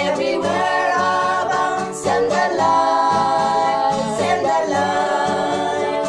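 A small group of women singing a Christian hymn together in held, sustained notes, accompanied by a strummed acoustic guitar.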